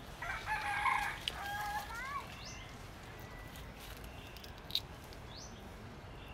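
A rooster crowing once, a call of about two seconds near the start that bends in pitch at its end. Small birds give short rising chirps a few times, and a single sharp click comes near the end.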